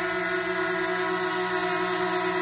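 DJI Mavic Mini quadcopter hovering in place, its four uncapped motors and propellers giving a steady whine made of several held tones.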